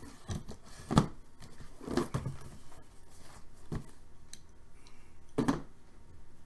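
Cardboard card boxes being handled on a table: lifted, slid and set down, with a few sharp knocks and scrapes, the loudest about a second in and another near the end.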